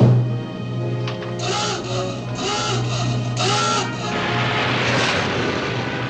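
A submarine's surfacing klaxon sounds three times, about a second apart, each blast rising and falling in pitch, over dramatic orchestral film music. It is followed by a long hiss of rushing air as the boat surfaces.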